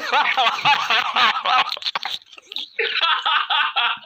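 Men laughing hard together, in a long burst, a short break about two seconds in, then more laughter.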